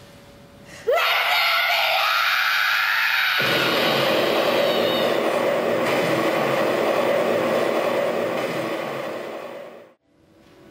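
Theatrical explosion sound effect: a sudden loud rushing roar that opens with a quick rising whine about a second in, grows deeper a few seconds later, and fades away near the end. It goes with an onstage pyrotechnic flash and smoke burst.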